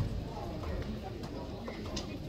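Boxers' footwork thumping and scuffing on the ring canvas during an amateur bout, under voices calling from ringside, with a sharp knock near the end.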